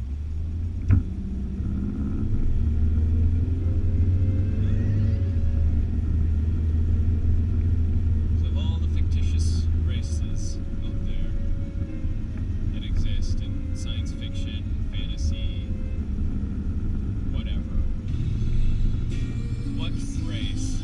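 Car engine and road rumble heard inside the cabin as the car pulls away and drives on. The rumble swells a couple of seconds in and eases after about ten seconds. There is a single sharp click about a second in.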